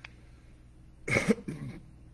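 A man coughs once, sharply, about a second in, ending in a short voiced "uh".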